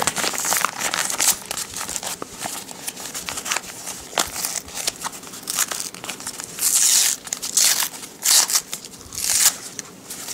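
A paper padded cushion mailer being torn open by hand: crinkling and short ripping tears of paper, louder in the last few seconds.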